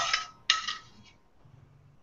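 A metal spoon clinks twice against the sauté pan, about half a second apart, each strike ringing briefly.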